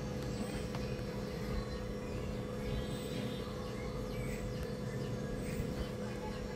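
Steady, low background noise with a faint constant hum under it.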